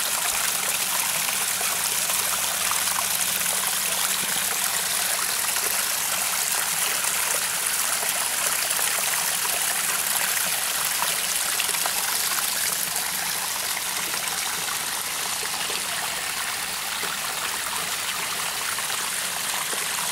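Water from a small pump-fed garden waterfall splashing and trickling steadily over rocks into a creek.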